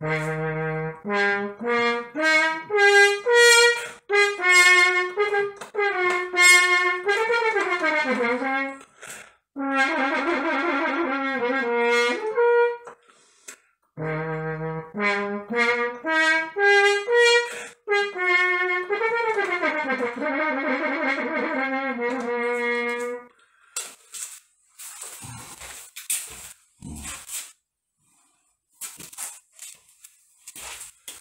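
French horn playing the same phrase twice, separate notes climbing step by step up to longer held notes, with a short break between the two passes. The horn is heard through a laptop speaker over a video call.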